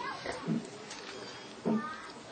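A pause in a talk with low room noise, broken by two brief low vocal sounds from a person: a faint one about half a second in and a short, louder one near the end.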